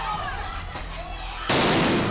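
Police stun grenade going off: one sudden loud blast about one and a half seconds in, over faint crowd voices.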